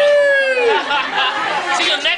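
A long drawn-out vocal call, its pitch rising and then falling, ending about a second in. Several people chattering follow it.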